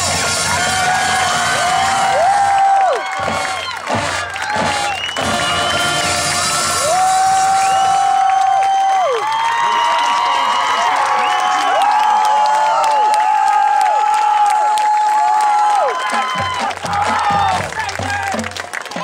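High school marching band at a football halftime show ends its piece with the full band playing in the first few seconds, then the crowd in the stands cheers with long whoops and shouts. Near the end, low drumming starts up again.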